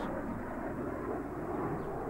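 Jet fighter flying overhead: a steady engine noise with no breaks or rise and fall.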